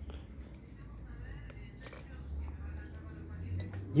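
Faint handling noise of ignition wiring and plastic spade connectors, a few light clicks, over a low steady hum.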